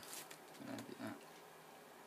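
A person's faint, low murmuring: two short grunt-like vocal sounds about a second in.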